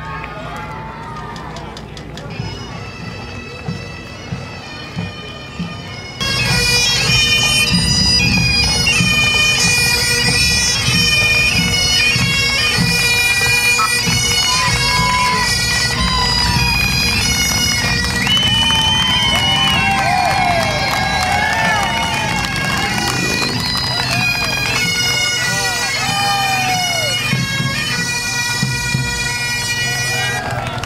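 Bagpipes playing a tune, coming in suddenly about six seconds in over quieter street noise with a few sharp clicks. Voices call out under the pipes later on.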